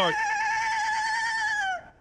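A man imitating a horse's neigh: one long, high whinny with a quivering pitch that slides down and stops near the end.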